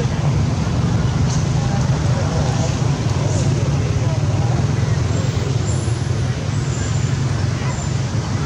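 A steady, low-pitched rumble that holds level throughout, with faint, indistinct voices in the background.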